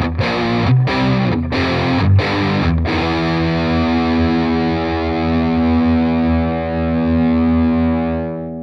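Yamaha Pacifica 112 electric guitar played with distortion through a Fender Bassbreaker 30R amp with reverb: quick picked notes, then about three seconds in a chord is struck and left to ring out.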